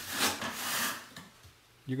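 Wide drywall knife scraping wet joint compound across a ceiling while the skim coat is wiped down: a scrape of about a second that fades away.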